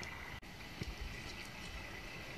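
Quiet forest ambience: a faint, steady background hiss with a couple of faint ticks, broken by a momentary dropout early on.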